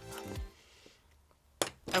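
A person spitting out a mouthful of sea moss gel: one short, sharp spluttering burst about one and a half seconds in, after faint background music and a near-quiet pause.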